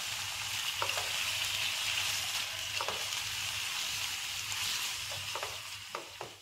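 Chicken strips sizzling in hot oil in a wok, a steady frying hiss. A silicone spatula stirs them, with a few light taps and scrapes against the pan.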